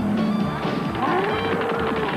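Cartoon score music: a low held note gives way about halfway to a note that slides up and holds, over thudding sound effects of a cartoon bull pawing the ground.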